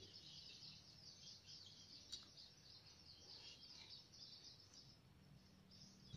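Near silence, with faint continuous bird chirping in the background.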